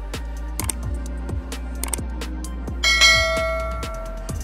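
Background music with a steady beat. Short clicks come about half a second and two seconds in, and near three seconds a bright bell chime rings out and fades over about a second: the notification-bell sound effect of a subscribe-button animation.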